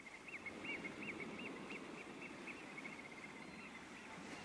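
A small bird calling faintly: a run of short repeated high notes, about three a second, trailing off into softer ticks. A steady low outdoor hiss of wind or distant surf lies beneath.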